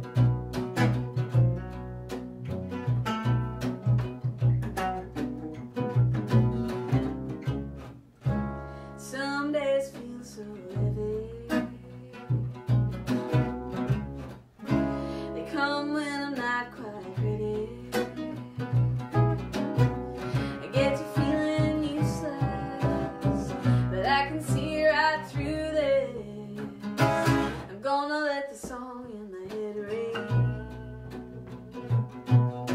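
Acoustic trio playing live: a woman singing lead over mandolin, acoustic guitar and plucked upright bass. The song opens instrumental and her voice comes in about nine seconds in, in phrases with short pauses between them.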